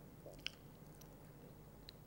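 Near silence: room tone in a speaker's pause, with one short faint mouth click about halfway through.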